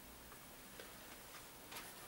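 Near silence with a few faint ticks, about two a second, and a slightly stronger tick near the end.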